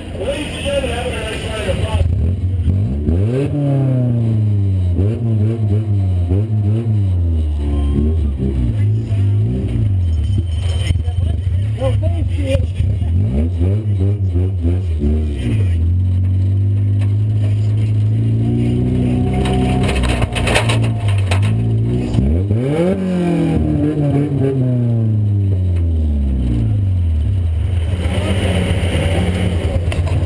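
Car engine heard from inside a demo-cross car's cabin, revving up and falling back again and again as the throttle is worked. About twenty seconds in there is a burst of rattling and clatter.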